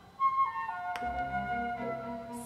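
Opera aria played back through B&W 801 Matrix Series 2 loudspeakers and heard in the room: a brief gap, then soft held instrumental notes that step down in pitch between the singer's phrases.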